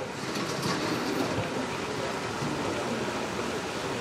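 Steady, even rushing noise with no speech, picked up by an open microphone.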